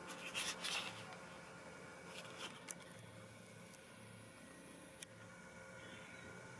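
Faint rustling and a few small clicks, most of them in the first second, over a faint steady hum.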